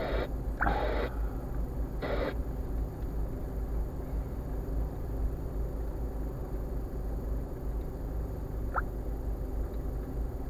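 Steady low rumble inside a stationary car's cabin with the engine idling. Two brief snatches of voice come in the first couple of seconds, and a short high chirp sounds near the end.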